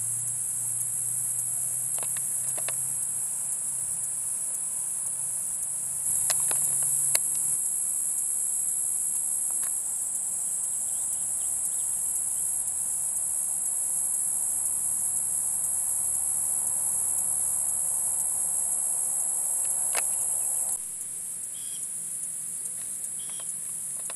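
Steady high-pitched chorus of insects trilling without a break, with a few faint scattered clicks; it drops somewhat in level near the end.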